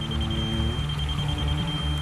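Background music: held low notes over a bass line, with a thin high steady tone that flickers on and off.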